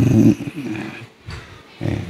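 An elderly man's hoarse voice over a microphone: a drawn-out vocal sound that trails off in the first half second, fainter rough throat sounds, then a short vocal sound near the end.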